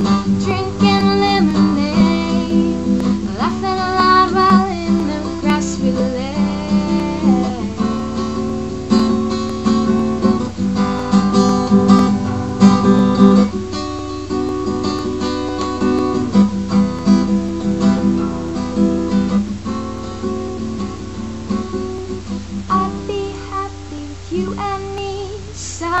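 Acoustic guitar strummed steadily through chord changes: an instrumental break between sung lines of a country-folk song.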